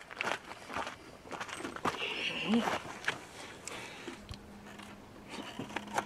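Irregular crinkling and crunching from a crisp snack bag being handled and chips being chewed. A short murmur comes about two seconds in, and a faint steady low hum starts a little past the middle.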